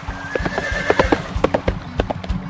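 Horse hoofbeats in quick succession with a high horse whinny in the first second, over a steady low tone.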